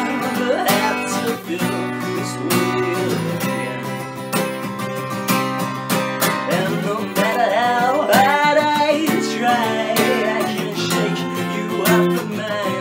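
Acoustic guitar strummed in a steady rhythm, with a male voice singing a melodic line over it, most strongly in the second half.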